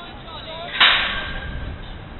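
A single sharp smack about a second in, the sound of a football being struck hard on the pitch, fading quickly with a short ringing tail.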